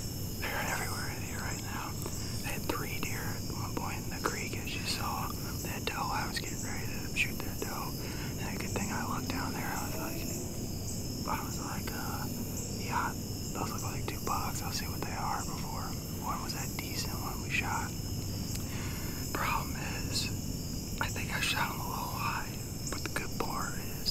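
A man whispering in short, breathy phrases, with a steady high-pitched insect drone behind.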